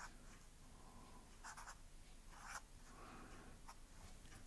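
Faint scratching of a felt-tip pen on paper as letters are written by hand: a few short, separate strokes.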